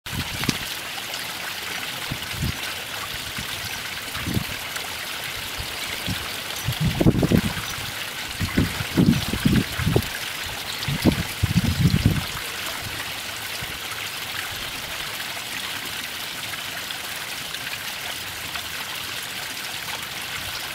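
Small garden waterfall and stream trickling over stone ledges, a steady splashing hiss. Between about six and twelve seconds in, a run of short, low, dull thumps rises above it.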